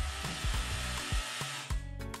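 DeWalt cordless drill-driver running steadily and stopping shortly before the end, over background music with a steady beat.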